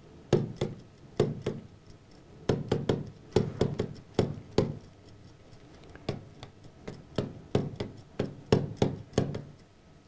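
Pen stylus tapping and clicking against the glass of a touchscreen display as words are handwritten: a string of sharp, irregular taps in quick clusters, with short pauses between them.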